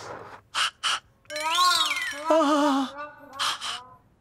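A man crying out: sharp gasping breaths, then a drawn-out wail that rises and falls in pitch, a second wavering cry, and two more gasps near the end.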